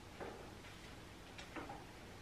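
A few faint, irregular light knocks and clicks of a painting being handled and shifted on a wooden easel.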